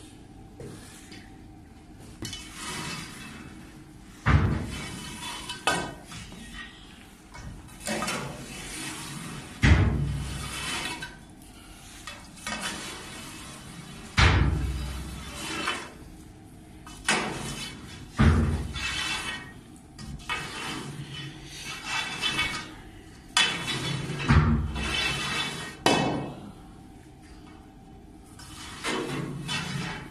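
Long metal rod scraping and knocking inside a fuel-oil boiler's flue passages to clear built-up soot, with sharp metallic knocks every few seconds and scraping between them.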